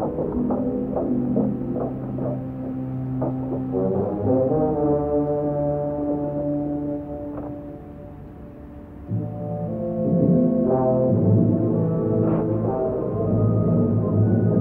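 Orchestral film score with held brass chords, from an old movie soundtrack heard muffled and dull through the wall of another room. It sinks to a quiet passage just past halfway, then swells louder again.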